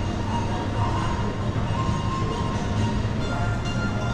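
Steady low rumble of shopping-centre ambience, with faint music playing.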